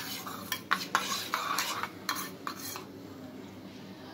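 Metal spoon stirring activated dry yeast in a small stainless steel bowl, giving a run of light, irregular clinks and scrapes against the steel for about three seconds.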